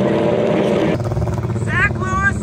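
Honda Civic drag car's engine running at steady revs as it creeps forward. About a second in, the sound cuts to a lower engine drone with voices over it.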